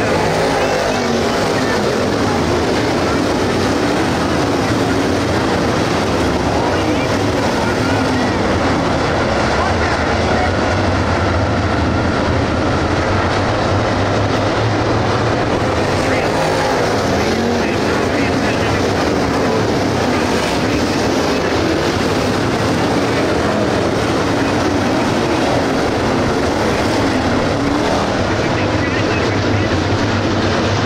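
A field of dirt late model race cars with GM 602 crate V8 engines running laps together. The engines make a loud, steady, unbroken noise.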